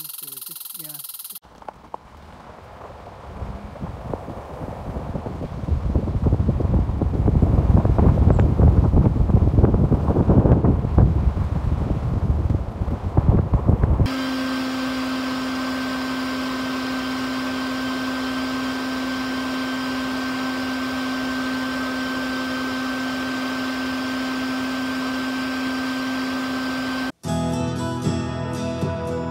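Colorado bee vac's vacuum motor running with a steady hum and a constant whine. Before it, a loud, crackling low rumble builds up over several seconds.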